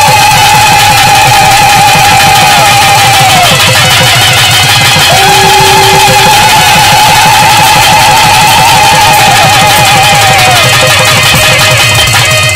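Loud live band music: a reed wind instrument holds two long, wavering notes, the second starting about five seconds in, over fast, dense percussion.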